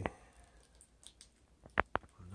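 Quiet room tone, then two short, sharp clicks near the end, about a fifth of a second apart, from handling.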